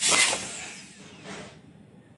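A small handheld air pump pressed onto the neck of a plastic bottle, hissing with rushing air. The hiss starts suddenly and fades over about a second and a half.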